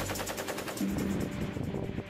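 Belt-fed machine gun firing a sustained automatic burst, a rapid even string of shots at about a dozen a second, under background music.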